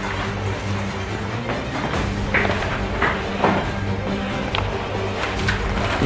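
Background music with held low notes.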